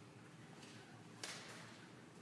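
Near silence: quiet room tone of a stone church, with one faint, short swish a little over a second in.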